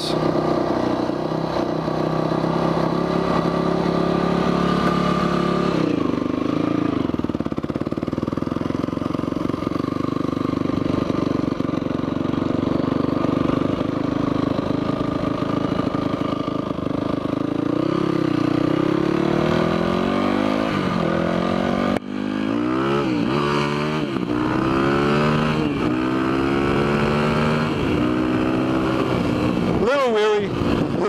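Yamaha WR450F single-cylinder four-stroke dirt bike engine running steadily, then pulling away and cruising. In the last third it accelerates hard several times, the pitch rising and dropping back with each gear change.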